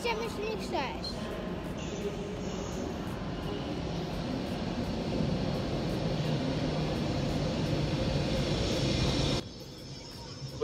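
A train rolling slowly into a station platform: a steady rumble with a low hum that grows gradually louder, then cuts off abruptly near the end.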